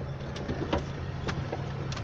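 Steady low rumble of a vehicle's engine and tyres heard from inside the cabin, with several sharp knocks and rattles as it rolls slowly over a rough dirt road.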